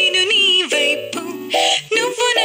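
Telugu film song playing: a processed singing voice over instrumental backing.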